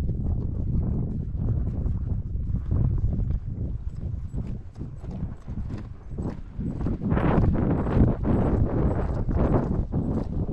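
Hoofbeats of a ridden horse on dry, sandy ground, a steady run of thuds that grows louder about seven seconds in, over wind rumbling on the head-mounted microphone.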